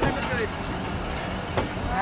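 Passenger coaches rolling slowly past on the track, the wheels knocking over rail joints about twice, with a voice calling out over the noise near the start.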